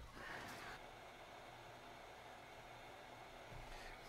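Faint, steady hiss of a hot-air rework station's airflow, heating the underside of a circuit board to loosen a surface-mount EEPROM chip.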